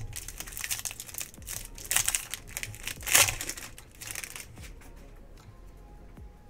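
Plastic wrapper of a baseball card pack crinkling as it is torn open and pulled off the cards, loudest about three seconds in, then dying down.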